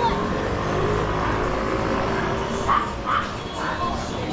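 Busy street ambience with background voices and traffic noise, then three short, high yelps in quick succession from a small dog in the last second and a half.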